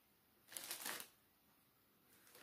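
One brief rustle of a bag or packaging being handled as items are taken out of it, lasting about half a second and starting about half a second in. Otherwise only faint room tone.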